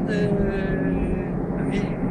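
Steady low rumble of a ship's machinery on the open deck, with a man's drawn-out voice over it for about the first second.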